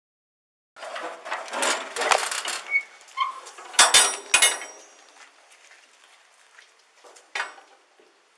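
Steel shipping container door hardware clanking as the locking-bar handles are worked and the door is opened: a run of sharp metal knocks with a brief ring, the loudest coming in a quick cluster about four seconds in, then a last knock near the end.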